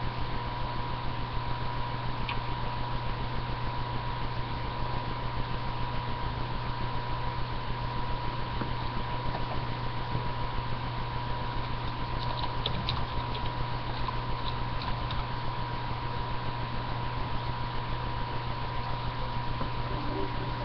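Steady electrical hum and hiss with a thin, constant whine, the self-noise of a low-quality webcam microphone. A few faint clicks come about twelve to fifteen seconds in.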